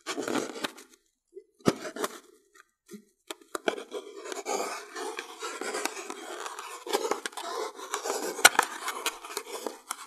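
Thread rubbing and scraping over an inflated latex water balloon as it is wound round by hand, with a few sharp clicks of handling. The scraping is sparse at first and becomes continuous from about three and a half seconds in.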